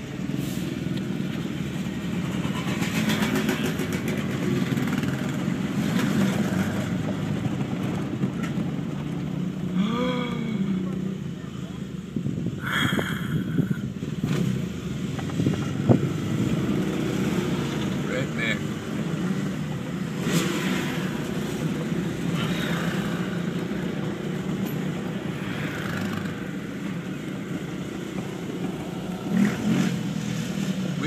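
Vehicle engine running at low speed with tyre and cab rumble, heard from inside the cab as it drives slowly over a dirt track. Voices come and go over it, and there is a single sharp knock about two-thirds of the way through.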